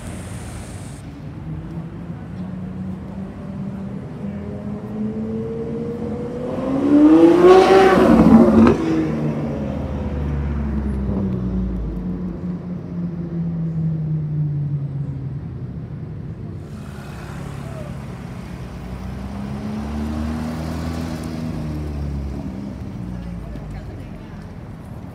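Supercar engines revving and accelerating through slow city traffic. A sharp rev climbing in pitch peaks about eight seconds in and falls away, and a second engine rises and fades in the later half, over street noise.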